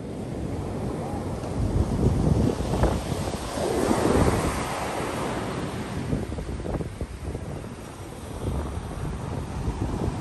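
Ocean surf washing onto a sandy beach, swelling and easing as the waves break, loudest a few seconds in. Wind buffets the microphone throughout, adding a low rumble.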